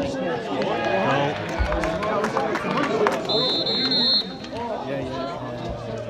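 Football spectators shouting and talking over one another by the pitch-side rail. Near the middle a referee's whistle sounds once, a steady shrill blast of about a second.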